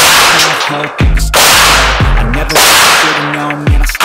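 Three 9mm shots from a Glock 19 pistol at uneven spacing of about a second to a second and a half, each very loud with a tail that rings on.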